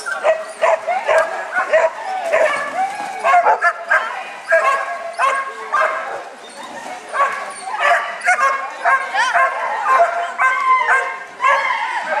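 A dog barking over and over in short, quick barks, several a second, with a brief lull about halfway through.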